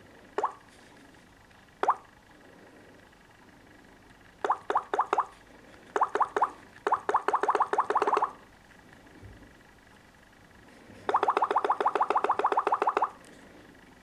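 Samsung Galaxy S4 touch-feedback sounds as the screen is tapped: short, pitched plopping blips. At first they come singly, then in quick runs of taps, and they end in a fast run of about ten taps a second that lasts about two seconds.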